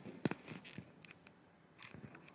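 A few short clicks and rustles as hands handle the collar of a blouse, with the sharpest click about a quarter second in.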